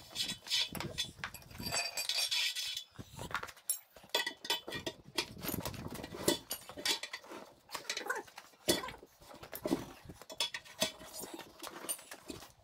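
Steel tyre irons clinking, knocking and scraping against a tractor's steel wheel rim as the rear tyre's bead is levered over it, in irregular sharp metallic strikes.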